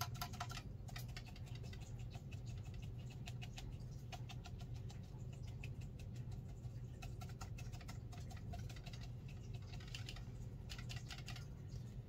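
A paintbrush dabbing and tapping on watercolour paper: a rapid, irregular patter of small soft taps that goes on throughout, over a low steady hum.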